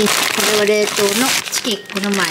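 Plastic grocery bags and packaging crinkling and rustling as groceries are lifted out by hand, with a woman's voice talking over it.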